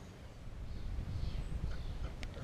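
Wind buffeting a chest-mounted action-camera microphone: a low, uneven rumble that grows about half a second in.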